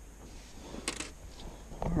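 Faint handling noise with a couple of sharp clicks about a second in, as a hook is worked out of a bass's mouth by hand.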